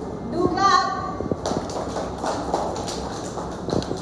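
A short drawn-out voice near the start, then from about a second and a half in, an irregular patter of many children's footsteps and taps on a hard floor.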